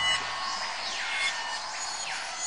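Sound effects for an animated TV-channel logo: a sharp hit at the start as a low droning tone stops, then two high falling glides about a second apart.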